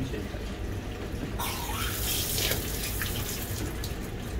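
Hand sprayer on a dog-wash hose spraying water, a hiss of spray that starts about a second and a half in and runs until near the end, over a steady low hum.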